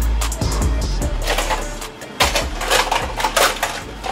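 Hard trap beat instrumental with a deep 808 bass that fades out about halfway through, leaving a run of sharp, clattering percussive clicks.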